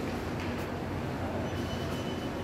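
Steady low rumbling background noise of a supermarket aisle, with a faint thin high tone starting about one and a half seconds in.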